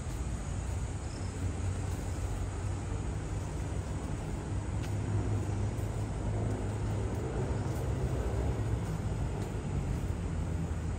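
Steady low rumble of city traffic, with a faint engine hum wavering in and out.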